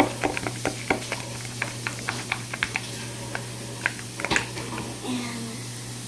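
A metal spoon stirring sticky slime in a small plastic cup, with irregular clicks and scrapes several times a second that stop about four and a half seconds in.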